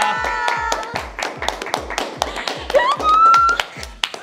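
Several people clapping, quick claps layered over background music with a steady low beat about four times a second. About three seconds in, a voice gives a short rising cheer.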